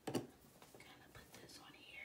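Soft handling noises as a plush stuffed animal is pressed down into a cardboard gift box: a sharp tap just after the start, then faint rustling and small ticks.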